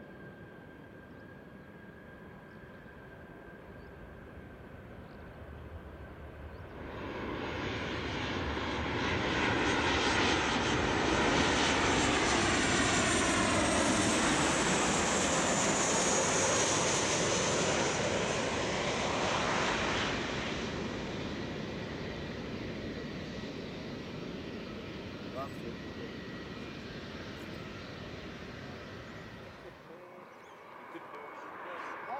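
Jet engines of a Qantas Boeing 737-800, its CFM56 turbofans, passing low overhead on final approach: the sound comes in suddenly about seven seconds in, builds to a loud rushing whine with falling tones as the aircraft goes over, then fades away slowly. Before that, faint steady jet noise from a distant airliner.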